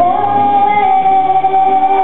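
Children's choir singing a worship song with instrumental accompaniment, the voices holding one long note.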